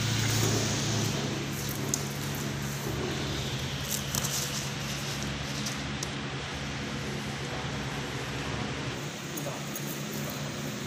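A steady low hum with an even background hiss, and a few faint clicks and rustles.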